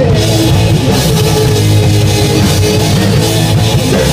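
Live rock band playing loudly: electric guitars, bass guitar and a full drum kit.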